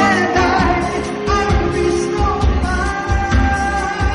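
Pop song: a voice singing long held notes over a band with a pulsing bass beat.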